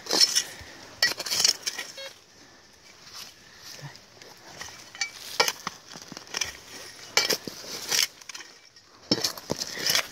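Spade digging into earth: the metal blade is stamped into the dirt and scrapes and clinks in irregular strokes, a second or more apart.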